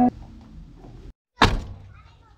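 A car door shutting with one loud thunk about one and a half seconds in, right after a brief moment of dead silence, the sound fading within half a second.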